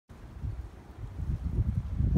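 Wind buffeting the microphone: an uneven, gusty low rumble with nothing else clearly heard.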